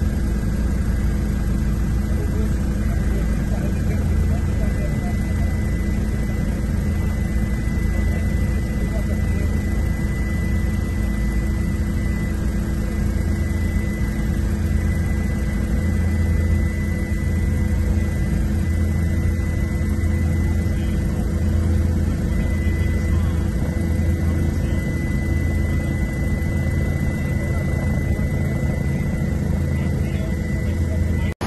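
Steady drone of an aircraft's engine and rotor or propeller, heard from inside the cabin: a low throb with several steady hums over it.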